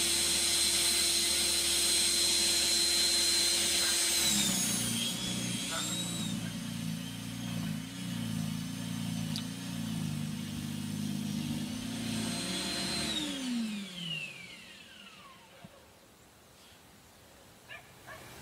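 A 2 kW YT6601 electric snow blower's motor and impeller run with a high steady whine. About four seconds in, the pitch drops and wavers while it throws snow. Near the end the machine is switched off and its whine falls away as it spins down.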